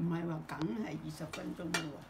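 Chopsticks and porcelain dishes clinking twice at a dinner table while a woman talks.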